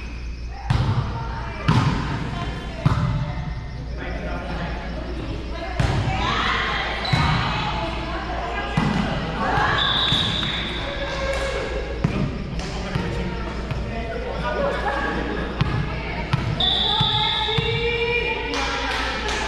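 Volleyball being struck during a rally, three sharp hits in the first three seconds, echoing in a large gym. Players' voices calling and talking follow between points, with two brief high tones about ten and seventeen seconds in.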